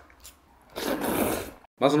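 A mouthful of jjajangmyeon with webfoot octopus being eaten: a faint click, then just under a second of loud, noisy eating sound close to the microphone.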